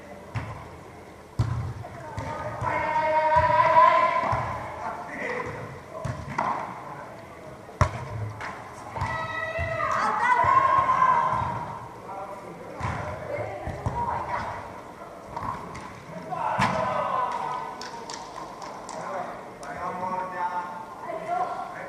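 A beach volleyball struck sharply by hand twice, about a second and a half in and again about eight seconds in, with dull thuds following and players' voices calling and shouting in a large indoor hall.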